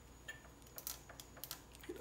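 A few faint, light clicks and taps, several spread irregularly over two seconds, of fingers handling the metal priming-system parts of a Dillon XL650 progressive reloading press.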